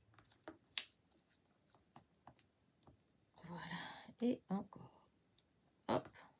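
Light clicks and taps of paper and a small hand tool being worked against a ruler on a cutting mat, with a brief murmured vocal sound a little past the middle.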